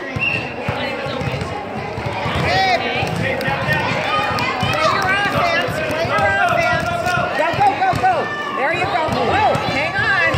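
Overlapping voices of spectators and players in a gym, with players' footsteps running and a basketball bouncing on the court. Several short high squeaks come near the end.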